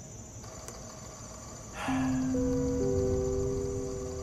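Crickets chirring steadily. About halfway through, three held musical tones enter one after another and sustain, forming a low chord.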